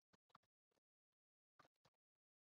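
Very faint computer keyboard typing: a scatter of short, irregular keystroke clicks, in a quick cluster near the start and another near the end.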